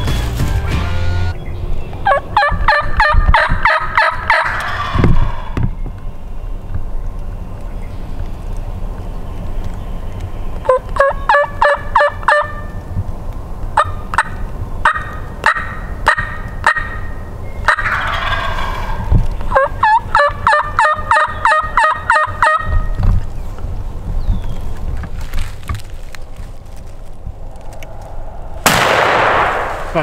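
Wild turkey calling: several runs of rapid yelps and cutting notes, some slurred into gobbles, from birds and hunters' calls answering each other. Near the end a single loud shotgun blast rolls off in echo.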